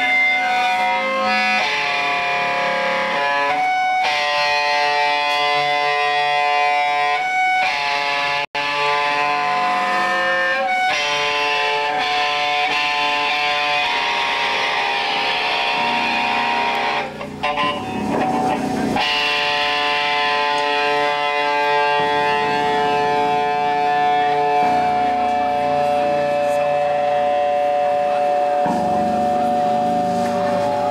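Live band playing loud, distorted electric guitar, holding notes and chords that change every second or two. The sound drops out for an instant about eight seconds in, and a rougher, noisier stretch comes a little past the middle.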